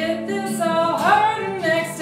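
A woman singing a slow folk song, accompanied by her own strummed acoustic guitar.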